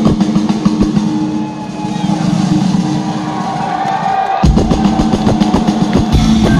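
Live rock band heard from the audience: fast drum rolls over a held low bass-and-guitar note, then a loud full-band hit about four and a half seconds in as the song kicks in.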